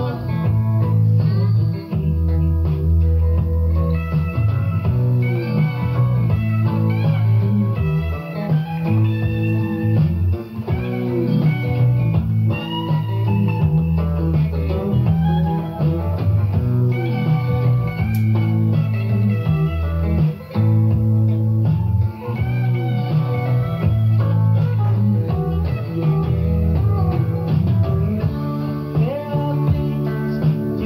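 A rock song with electric guitar lines over bass guitar and no singing, played back from an old cassette recording of an FM radio broadcast, with little treble.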